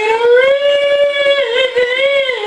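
A man singing one long, high held note that rises slightly about half a second in and wavers down near the end.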